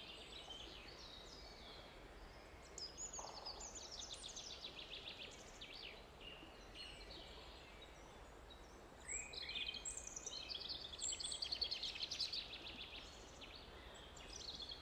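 Songbirds singing faintly: two phrases of quick, high chirping notes, the second, louder one about nine seconds in, over a faint steady low hum.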